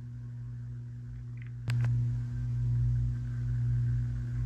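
A steady low electrical hum. A sharp click comes a little before halfway, and after it the hum is louder.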